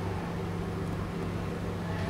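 Steady low hum with a light even hiss: the room tone of a quiet hall.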